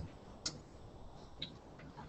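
Quiet room tone with three faint, sharp clicks, the clearest about half a second in: the laptop being clicked to advance the presentation slide.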